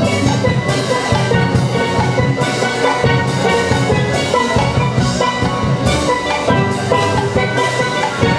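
Steel band playing: several steelpans of different ranges struck together in a steady rhythm, over a drum kit keeping the beat.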